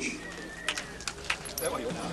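Outdoor camcorder background sound with faint distant voices and a few light clicks, and a thin high tone that sags slightly in pitch.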